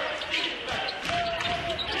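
A basketball being dribbled on a hardwood court, a series of short bounces during live play.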